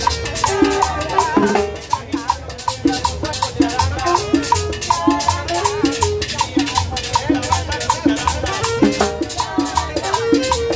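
Live salsa band playing an upbeat groove: timbales and conga strike sharply over a bouncing upright-bass line, a metal shaker scrapes steadily on the beat, and a saxophone carries the melody.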